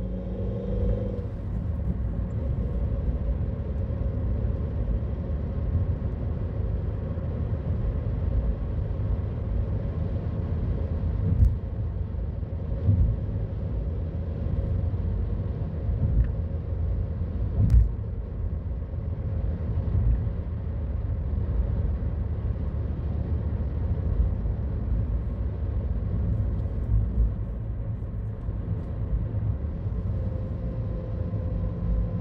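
Car driving, heard from inside the cabin: a steady low rumble of engine and tyres on the road. There are two sharp knocks, one just before halfway and one a little after.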